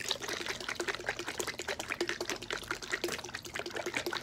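Oil and water sloshing inside a capped bottle shaken hard and fast by hand, a rapid, continuous run of splashing strokes as the two liquids are churned into a cloudy mix of little bubbles.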